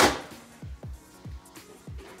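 A single sharp crack as a slab of expanded-polystyrene (styrofoam) packing foam is snapped over a knee, dying away within a fraction of a second. Background music with a steady beat plays throughout.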